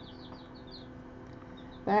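Faint, high, short peeps of young chicks, a quick run of them in the first second and a half, over a low steady hum.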